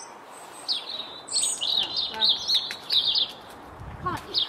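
Small birds singing, with a quick run of high, rapid chirps from about a second in until past three seconds.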